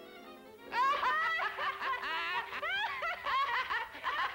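Cartoon character's rapid, high-pitched laughter, starting a little under a second in, over orchestral background music with a held note.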